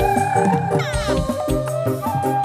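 Instrumental passage of a live dangdut-style band playing for a burok parade: a held, warbling melody line over regular hand-drum strokes, with a falling sweep about a second in.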